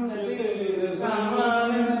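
Voices chanting Jain ritual mantras, held on a nearly steady pitch.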